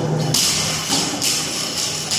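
Loaded barbell dropped onto a rubber gym floor, the bar and plates rattling with a metallic jingle about a third of a second in, then a second, shorter rattle as it settles.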